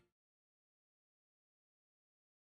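Silence: the sound track is blank, with only the last trace of fading music in the first instant.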